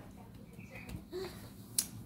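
A single sharp click near the end, over faint room tone, with a brief faint vocal sound a little after one second.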